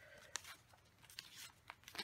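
Faint paper handling: light rustles and a few soft clicks as a sticker and washi tape are handled and pressed onto a planner page.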